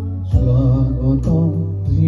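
An Assamese modern song performed live: a man's voice singing into a handheld microphone over instrumental backing with sustained bass notes, a new phrase beginning about a third of a second in.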